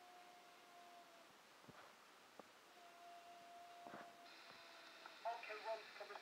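Handheld scanner radio tuned to 135.575 MHz in the VHF airband, quiet between transmissions apart from a faint steady tone that comes and goes and a few faint clicks. About four seconds in a hiss of static opens up, and a brief burst of radio voice follows.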